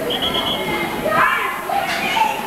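Indistinct young voices shouting and calling across a football pitch, several at once, none of the words clear.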